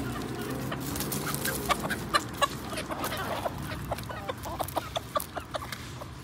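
Chickens clucking while feeding, with a dense run of short, sharp taps through the middle as they peck at food on gravel.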